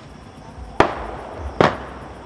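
Two firecracker bangs, a little under a second apart, each a sharp crack with a short echoing tail.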